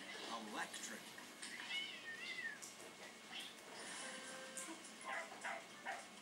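A cat meows once, a high wavering call about two seconds in, heard through a television's speaker, with scattered light clicks around it.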